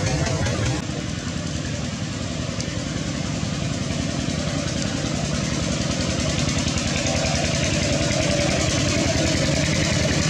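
An engine running steadily, with a fast low pulsing throughout.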